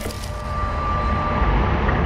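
Intro logo sound effect: a deep rumbling drone with a glitchy crackle at the start and a thin steady tone held over it for about a second and a half, the rumble swelling toward the end.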